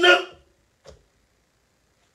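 A man's voice trailing off at the start, then a pause of near silence with one faint, brief sound about a second in.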